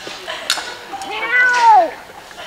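A single drawn-out, meow-like cry that rises and then falls in pitch over the second half, after a short sharp click about a quarter of the way in.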